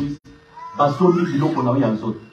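A man preaching into a handheld microphone. His voice breaks off for a short pause near the start, then the preaching resumes under a second in.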